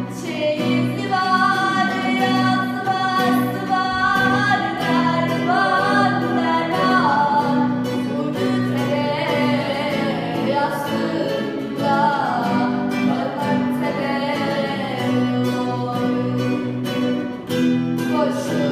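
Acoustic guitar strummed in a steady rhythm, accompanying a girl singing a Turkish folk song with a bending, ornamented melody.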